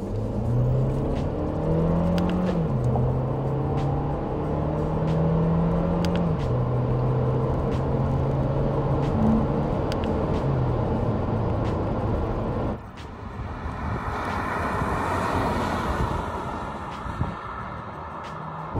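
Audi Q2's 1.5 TFSI turbocharged four-cylinder engine heard from inside the cabin, pulling steadily under acceleration. Its pitch climbs through each gear and drops at three quick upshifts of the seven-speed S tronic dual-clutch gearbox. Near the end it gives way to a quieter rush of road and wind noise.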